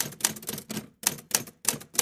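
Typewriter keys clacking in a rapid, uneven run of keystrokes, about five a second.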